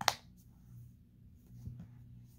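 A plastic flip-top cap on a lotion bottle snaps shut with one sharp click, followed by faint handling sounds of hands working the lotion.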